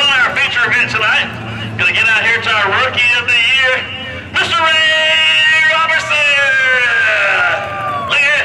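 A man talking with crowd babble behind him. About halfway in, a long held sound begins, steady at first and then slowly falling in pitch.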